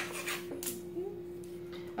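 Small plastic toy capsules being handled and pried at: a single sharp click at the start, then faint rubbing, over a steady low hum.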